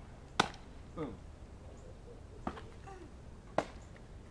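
A baseball smacking into the pocket of a new black leather Rawlings Gold Glove GG204 with one loud, sharp pop. Two more sharp, short clicks follow about two and three seconds later.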